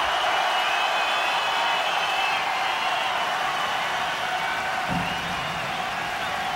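Large arena concert crowd cheering and applauding in a steady, dense roar, with high whistles running through it.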